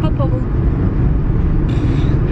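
Steady low rumble of a small car's engine and road noise heard from inside the cabin while driving.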